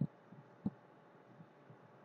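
Faint room tone with two short, low thumps about two-thirds of a second apart.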